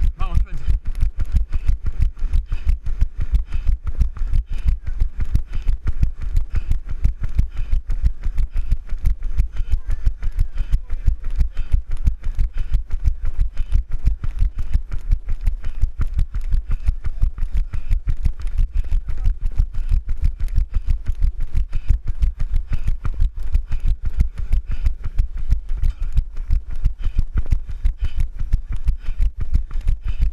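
Wind rumbling on the microphone of a camera carried by a running person, with a rapid run of knocks from the camera jostling in the hand. It goes on steadily throughout.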